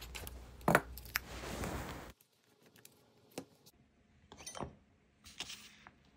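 A rubber brayer rolling over paper laid on a gel printing plate, with a few sharp clicks, cutting off abruptly about two seconds in. After that, three short, soft rustles or taps of paper being handled on a tabletop.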